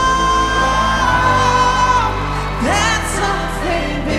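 Male solo singer with backing music: a long held high note that falls away about two seconds in, then a quick upward sweep into a wavering vocal run.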